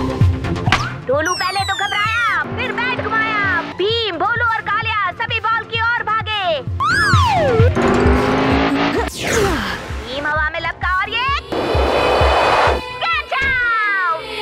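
Cartoon background music with a steady beat, overlaid with comic sound effects: many quick rising and falling whistle-like glides, then two long whooshing rushes of noise in the second half.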